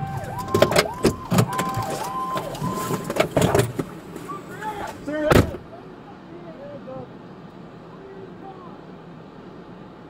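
Police cruiser siren switching between two pitches, with clicks and knocks around it. A loud thump about five and a half seconds in ends it, and only a low steady background is left.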